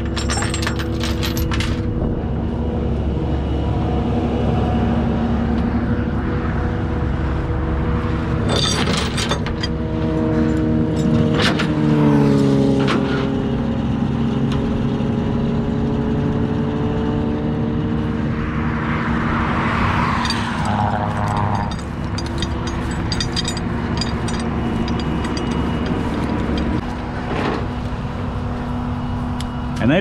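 Engine of the flatbed tow truck running steadily, its pitch dipping about twelve seconds in and then climbing back slowly. Wind rumbles on the microphone throughout, with a few sharp clicks.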